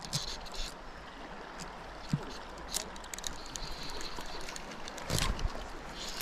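River water flowing steadily over a shallow run, with a few faint clicks and a brief louder rush about five seconds in.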